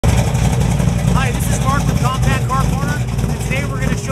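A man talking from about a second in, over a steady low rumble.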